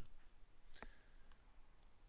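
A few faint clicks of a computer mouse, the clearest about a second in, over near-quiet room tone.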